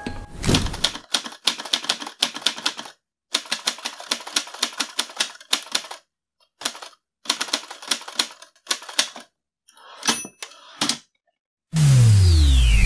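Typewriter keystroke sound effect: rapid clattering strikes in runs of a second or two, broken by short silent pauses. Near the end a loud burst of static hiss cuts in.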